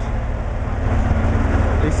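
Large diesel engine running steadily at close range, a low rumble with a steady hum over it; the source is the engine of a truck-mounted mobile crane working at a building site.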